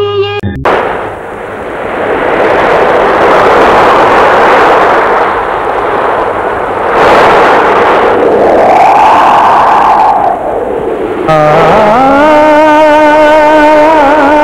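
A film song cuts off abruptly and a loud, even rushing noise takes over, with a single tone that rises and falls a little past the middle. About eleven seconds in, held chords begin the introduction of the next song.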